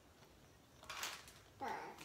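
A short, soft clatter of hard plastic toy pieces being fitted onto a stacking tower about a second in, with a brief voice sound just before the end.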